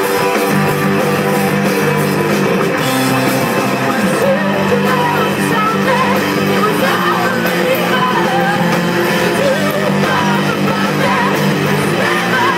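Rock band playing live, with electric guitars, bass and drums at a steady loud level. A lead vocal sings over the band, strongest from about four seconds in.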